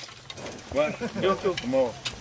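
A person talking for about a second, starting a little under a second in, over faint background noise.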